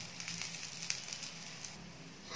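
Ragi adai frying in oil on a hot griddle, a faint steady sizzle with light crackling.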